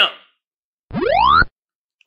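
Cartoon-style 'boing' sound effect: a single upward pitch glide lasting about half a second, about a second in.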